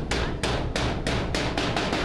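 Hammer blows on a sheet-metal door, a quick steady series of about three strikes a second that stops near the end.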